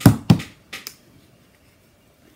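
A bottle of deep violet acrylic paint being handled, giving about four sharp knocks in the first second, the first two the loudest.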